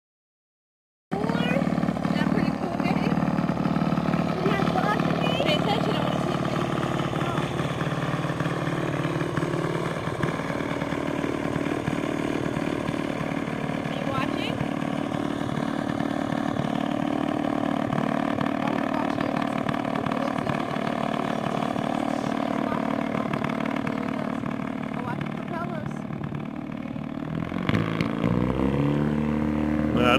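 Single-seat gyrocopter's engine running steadily as the machine taxis, then revving up with a rising pitch near the end.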